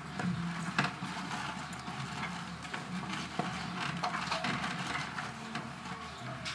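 A congregation getting to its feet: chairs scraping and knocking, with shuffling and scattered thumps. The sharpest knock comes a little under a second in.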